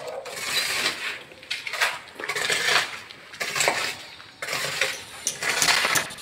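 Metal tools scraping and clinking in irregular strokes, about one every half second to a second.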